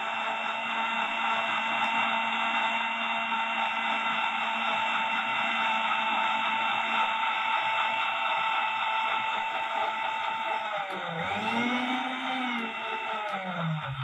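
Electric mixer grinder running steadily as it blends chunks of ash gourd into juice, a constant motor whine. Near the end its pitch wavers up and down for a couple of seconds.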